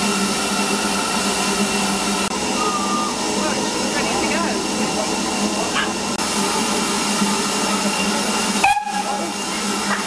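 Steady hiss of escaping steam from a standing BR Standard Class 4 tank steam locomotive, with a steady tone held underneath. The sound breaks off briefly near the end.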